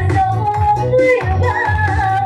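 A woman singing a rijoq, a Dayak song, into a microphone through a PA over electronic keyboard accompaniment with a steady bass beat.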